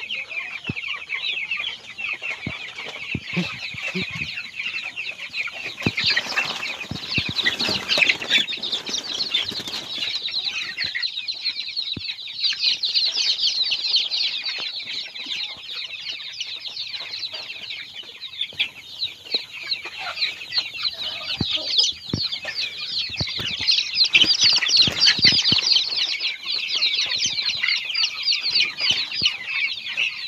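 A flock of young broiler chickens peeping continuously, many high chirps overlapping into one dense chatter that swells louder in places.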